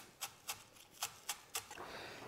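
Chef's knife chopping fresh herbs (parsley, chives, chervil) on a wooden cutting board: about half a dozen faint, light knocks of the blade on the wood, a few per second and unevenly spaced.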